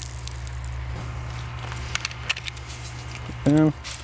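A foam cannon being fitted to a pressure-washer gun: several light clicks and handling sounds in the first half, over a steady low hum. A short spoken word comes near the end.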